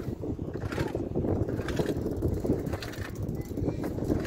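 Wind buffeting the microphone outdoors, a steady rumbling gust, with faint voices of people in the background.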